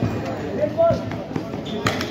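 A basketball bouncing on an outdoor concrete court, with one sharp bounce near the end, among the shouts of players and onlookers.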